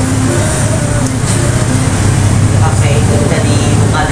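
A loud, steady low rumble of background noise with faint indistinct talk over it. The rumble grows a little stronger in the second half.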